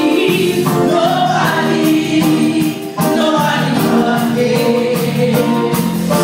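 Gospel choir singing, with a short break in the sound about three seconds in.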